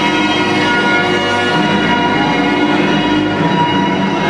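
Loud show music playing over the arena sound system, with held chiming tones and the chord changing about one and a half seconds in and again near the end.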